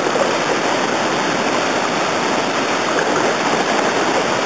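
Water pouring over a river dam: a loud, steady rush of falling water.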